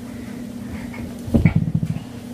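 A baby's short, low, creaky grunt about a second and a half in, over a steady faint hum.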